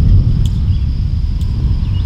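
Low, irregular rumble of wind buffeting the microphone outdoors, loudest at the start.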